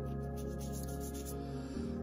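Soft background music with steady held notes, over the faint rubbing of a wet watercolour brush on paper.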